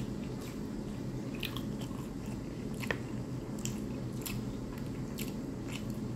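Close-miked eating sounds: a person chewing and biting stewed chicken and rice, with a handful of short sharp mouth clicks, the loudest about three seconds in.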